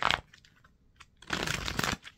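A deck of tarot cards being shuffled in the hands: a short sharp rustle at the start, then a longer dry rustle of cards for about half a second, beginning a little past the middle.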